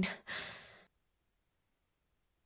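A woman's short breathy sigh, an exhale that fades out within the first second, then dead silence.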